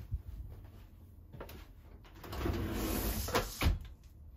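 Plastic bi-fold bathroom door being pushed open along its track: a faint knock, then about a second of rattling slide, ending in two sharp clacks as the panels fold.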